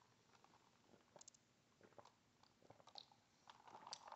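Near silence: faint mouth sounds of someone sipping and tasting a cold drink, with a few soft scattered clicks.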